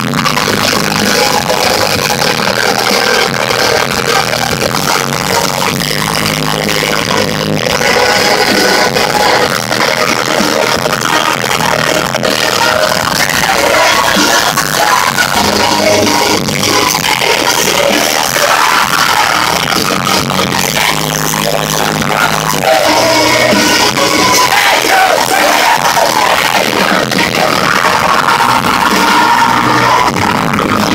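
A rock band playing loud live music, heard through a phone's microphone in the crowd, the sound dense and poor in quality.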